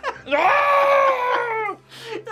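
One long, high, sustained scream of pain, held for about a second and a half and sagging slightly in pitch before it cuts off.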